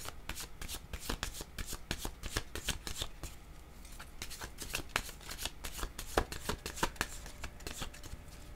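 A deck of oracle cards being shuffled by hand: a quick run of light clicks and slaps of card against card, thinning briefly near the middle.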